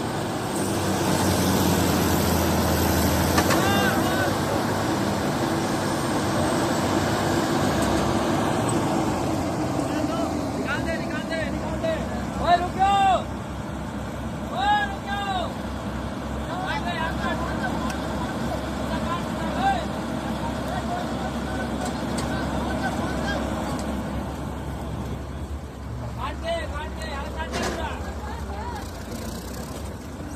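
Diesel engines of two Preet 987 combine harvesters running under load as one tows the other, stuck in a ditch, out with a strap. The engine sound is heaviest for the first eight seconds or so, then eases, with men's shouts in short bursts over it.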